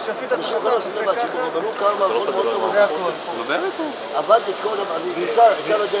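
Several people talking close by, with a steady high hiss setting in about two seconds in and continuing.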